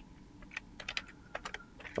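Computer keyboard being typed on: about ten quiet, irregularly spaced key clicks as a line of text is entered.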